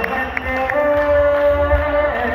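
Male a cappella vocal group singing in harmony, holding a chord of steady sustained notes through the second half.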